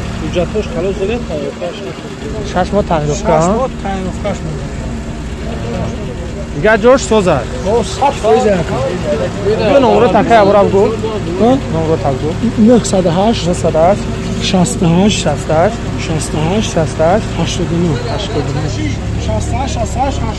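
Several men talking in another language, with a steady engine hum underneath, a car engine idling.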